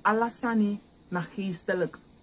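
A man speaking in two short phrases, over a steady high-pitched trill of crickets that runs on without a break.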